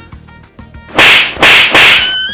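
Three loud whip-like swishing sound effects in quick succession, about 0.4 s apart, starting about a second in. They are dubbed over the picture as a comic cue, not made by anything seen on screen.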